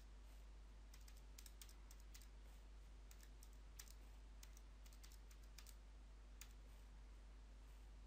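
Faint, irregular clicks of a handheld calculator's keys being pressed, in short runs of a few presses, over a low steady hum.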